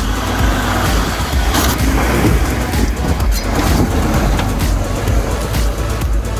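A four-wheel drive's engine as it crawls over rough ground, with electronic background music with a steady beat playing over it.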